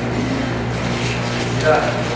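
Indistinct conversation among several people in a small room, over a steady low hum.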